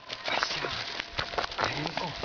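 Scuffling and patting as a dog jumps up against a crouching man and is handled, a series of short soft knocks and rustles, with a man's low murmur near the end.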